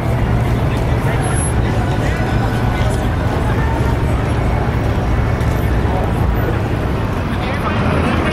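Busy street ambience: people's voices in a crowd mixed with vehicle traffic, over a steady low engine hum.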